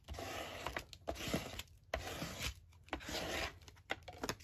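Paper being rubbed and handled on a cutting mat: several short rough, rustling bursts with brief quiet gaps between them.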